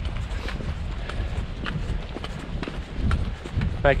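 Wind buffeting the microphone in a low, steady rumble, with the faint, regular footsteps of walkers on a tarmac road.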